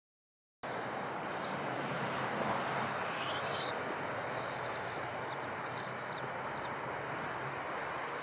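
Outdoor ambience field recording cutting in suddenly about half a second in: a steady wash of distant noise like far-off traffic, with faint high chirps now and then.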